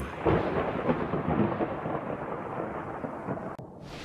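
A low, thunder-like rumble, loudest just after it begins and slowly fading, then cut off abruptly just before the end.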